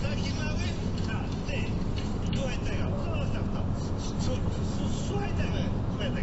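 Steady road and engine rumble of a car driving at motorway speed, heard inside the cabin, with faint voices talking over it.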